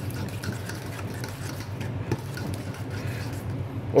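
Thick, wet paste of fermented red bean curd and oyster sauce being stirred in a stainless steel bowl: soft squishing and scraping, over a steady low hum.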